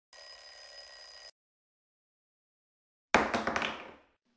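Channel-intro sound effects: a steady high ringing tone lasting just over a second, a silent pause, then a sudden louder hit about three seconds in that fades away over the next second.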